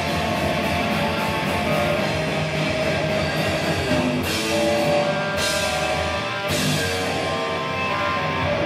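Metal band playing live: distorted electric guitars and bass holding long chords over drums. From about halfway in, a cymbal crash lands roughly once a second.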